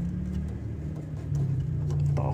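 A steady low machine hum, like a motor or engine running nearby.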